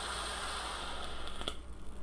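A long draw on an EHPro Big Bear RDTA vape atomizer: a steady hiss of air pulled through the atomizer and over the firing coil, lasting about a second and a half and ending with a small click.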